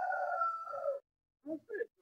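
A rooster crowing: a rising-and-falling opening, then a long held note that cuts off about a second in. A man's short spoken words follow near the end.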